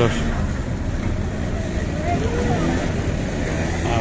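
Steady low rumble of a car engine running close by, with a faint voice about halfway through.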